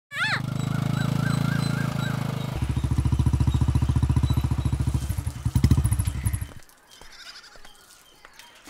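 Motorcycle engine running as the bike rides along; about two and a half seconds in it grows louder with a quick, even pulsing beat, and it cuts off at about six and a half seconds.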